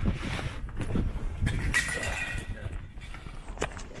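Footsteps, scuffing and rustling of a person squeezing under an old iron gate, with handling knocks on the camera.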